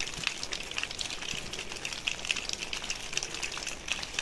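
Water dripping from a rock overhang: a faint, steady patter of many small irregular drops.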